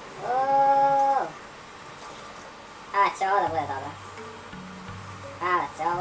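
A man's voice singing one held note for about a second, its pitch dropping away at the end, followed by a few short vocal sounds. A low steady hum comes in about halfway through.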